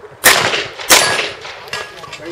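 Two pistol shots about two-thirds of a second apart, each followed by a short echo.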